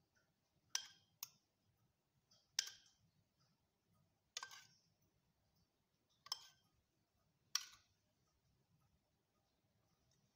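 A metal spoon clinking against a small saucepan and a baking dish as melted butter is spooned out: six sharp clinks, each ringing briefly, spaced a second or two apart.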